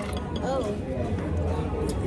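Restaurant dining-room background: a steady low hum, faint distant voices, and a few light clicks near the start and near the end.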